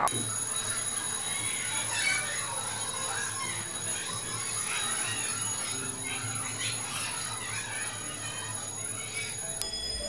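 School fire alarm going off for a fire drill: steady high-pitched electronic tones, which change to a different set of tones near the end, over a muffled hubbub of distant voices.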